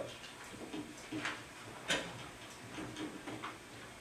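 A lull in a meeting room: a few scattered small clicks and rustles, the sharpest about two seconds in.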